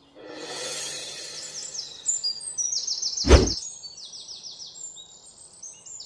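Birds chirping in quick, repeated high-pitched trills over a soft outdoor hiss. A single short, loud thump comes a little over three seconds in.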